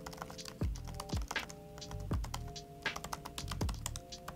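Typing on a laptop keyboard: quick, irregular key clicks, over soft background music with held chords.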